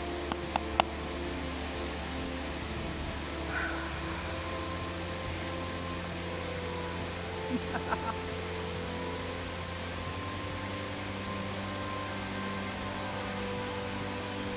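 A steady low mechanical hum that shifts pitch a couple of times, over the even rush of water at a weir. There are a few light clicks in the first second and a brief soft laugh about eight seconds in.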